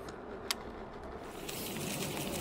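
Steady rushing noise of riding a Veteran Sherman electric unicycle, with a single sharp click about half a second in. About one and a half seconds in, the rush turns brighter and a little louder.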